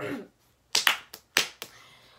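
A short, falling vocal sound from a woman, then a few sharp clicks in quick succession about a second in.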